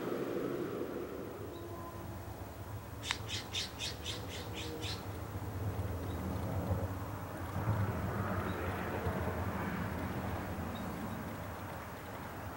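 A bird's harsh call: a quick run of about seven squawks, roughly four a second, lasting about two seconds, over a low steady rumble.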